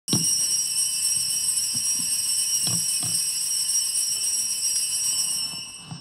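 Small church altar bells ringing: a sharp start, then a cluster of high ringing tones that fade out after about five and a half seconds. The bells signal the beginning of Mass.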